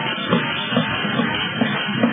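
Dance music with a steady beat, about two beats a second.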